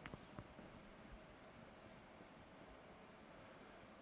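Faint dry-erase marker strokes on a whiteboard: a series of short, scratchy squeaks as lines and a resistor symbol are drawn.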